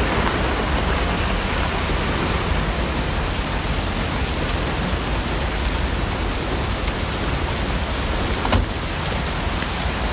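Steady rain falling, with a single sharp knock about eight and a half seconds in.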